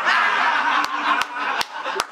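People laughing together, with one of them clapping his hands four times at an even pace from about a second in.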